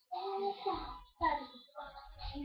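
A young girl singing, her voice gliding up and down in pitch, with dull low thuds under it about a second in and near the end.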